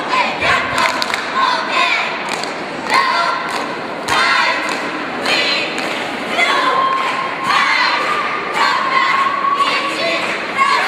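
Cheerleading team shouting a cheer chant in unison, with long drawn-out calls in the second half and a crowd cheering along. Two thuds on the mat come about half a second and about four seconds in.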